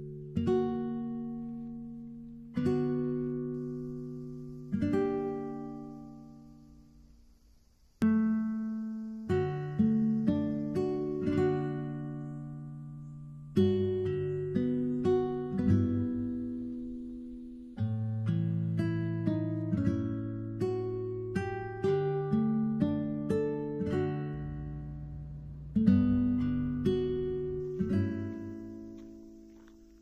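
Background music on acoustic guitar: a few slow strummed chords left to ring out, then a busier picked pattern with many more notes.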